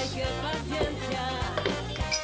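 Background music with a bass line and a beat.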